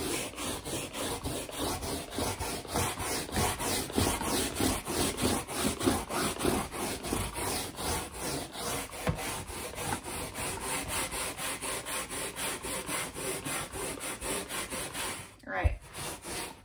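The stiff bristle brush of an unpowered spot-cleaner tool scrubbing wet upholstery fabric in rhythmic back-and-forth strokes, working cleaning solution into the stain after it has soaked. The scrubbing breaks off near the end with a soft knock.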